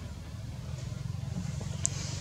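A steady low rumble, with one brief high-pitched chirp near the end.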